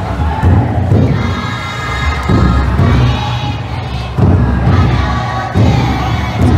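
A crowd of futon daiko bearers shouting a chant together while the float's taiko drum is beaten, in repeated loud surges about every one to two seconds.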